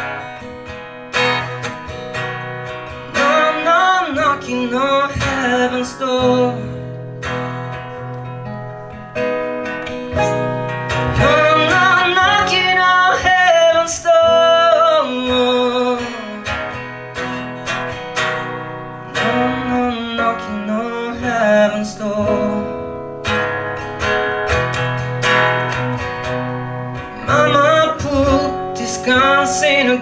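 Acoustic guitar strummed in a slow, steady rhythm, with a man's voice singing over it in stretches.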